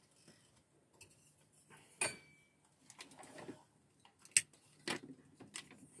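A few quiet clicks and knocks from lamps being switched on and handled, one about two seconds in with a short metallic ring and a sharp click a little after four seconds.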